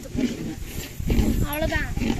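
Speech only: a woman talking animatedly in Tamil.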